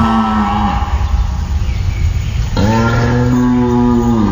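Two long cow moos. The first trails off under a second in; the second starts with a short rise in pitch about two and a half seconds in and holds for about two seconds.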